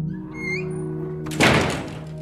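A heavy wooden front door thuds once as it is pushed open, about one and a half seconds in, after a short rising squeak. Steady background music plays underneath.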